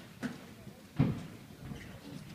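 A few scattered knocks, the loudest a low thump about a second in.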